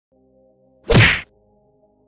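A single loud whack-like hit from an editing sound effect about a second in, lasting under half a second, over faint steady background music.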